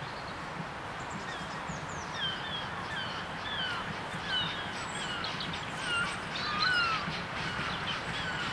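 Birds calling: a long run of short, downward-sliding chirps, one after another, starting about a second in, over steady low background noise.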